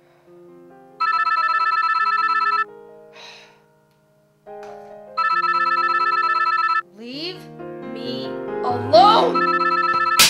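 A telephone ringing with a fast trilling ring, twice for about a second and a half each time, with a third ring starting near the end. Soft piano music plays underneath.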